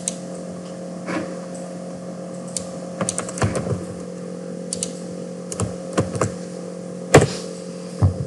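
Irregular clicks and taps from a computer keyboard and mouse: a dozen or so short clicks, some in quick clusters, the loudest near the end. Under them runs a steady low hum.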